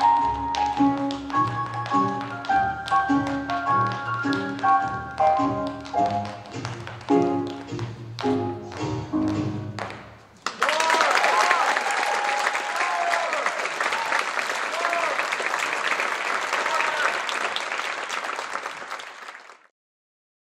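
Recorded music with bright pitched notes, with tap shoes striking the stage floor in quick clicks, stopping about halfway. Then audience applause with cheering, which cuts off suddenly near the end.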